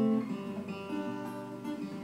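Acoustic guitar strummed, chords ringing and changing a few times, with no singing.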